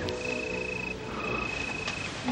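Crickets trilling: a steady high trill that stops briefly about a second in, then carries on.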